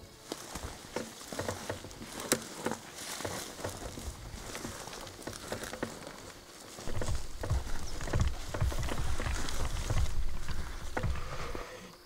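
Footsteps and dry grass rustling and crackling as people walk through tall dry grass. From about seven seconds in, a low rumble on the microphone joins in and the sound gets louder.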